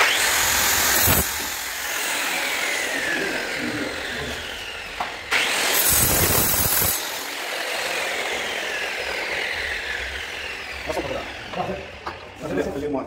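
Handheld angle grinder run in two short bursts, one at the start and one about five seconds in. After each burst the whine falls steadily in pitch as the disc spins down.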